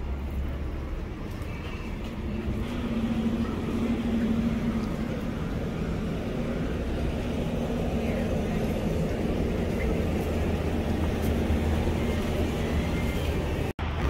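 City street traffic: a steady low rumble of car engines and tyres, with an engine's low hum holding through most of it. The sound drops out for an instant near the end.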